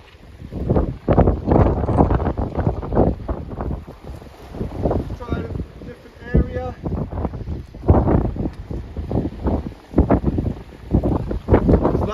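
Strong wind buffeting the microphone in uneven gusts.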